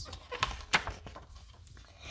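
A page of a picture book being turned: a few short, soft papery clicks and rustles in the first second, then quiet room tone.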